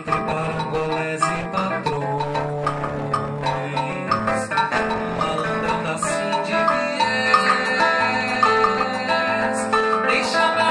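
Live acoustic music: a male voice singing into a microphone over a strummed acoustic guitar and light hand percussion, played continuously.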